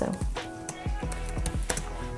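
Typing on a laptop keyboard: a quick run of key clicks, with background music under it.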